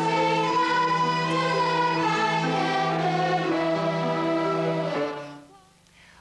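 A children's choir singing with a school violin ensemble, holding long notes over a steady bass line; the final chord dies away about five seconds in as the song ends.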